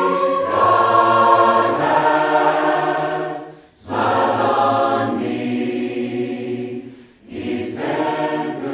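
A choir singing slow, held chords phrase by phrase, pausing briefly about halfway through and again near the end.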